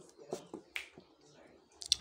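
A few short, soft mouth clicks and lip noises from the narrator during a pause in his talk, more of them just before he speaks again near the end.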